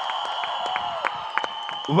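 Audience and people on stage applauding: a steady patter of hand claps with crowd noise.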